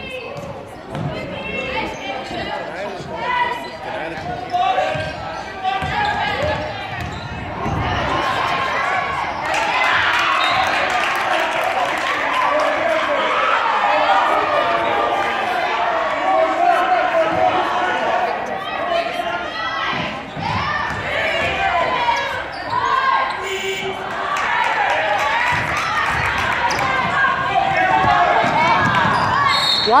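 A basketball bouncing on a hardwood gym floor, with crowd chatter and shouting filling a large school gymnasium. The crowd grows louder about eight seconds in.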